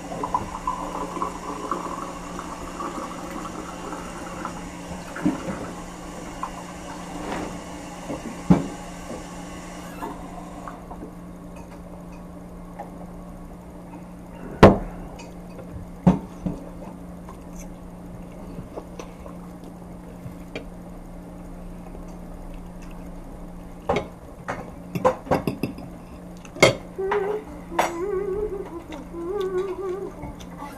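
A fork clinks against a plate now and then over a steady low hum, with a cluster of clinks in the last few seconds. A rushing, water-like noise fills the first ten seconds or so and then stops abruptly.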